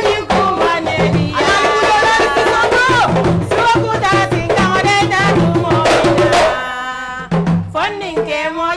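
Women singing with a djembe played by hand: the voices carry a melody over a steady pattern of drum strokes. Near the end the drumming thins under one long held sung note.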